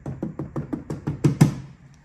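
A quick run of about a dozen hand taps on an aftermarket wiper filler panel and its freshly fitted rubber strip, roughly eight a second and loudest near the end, testing that the strip holds the panel down.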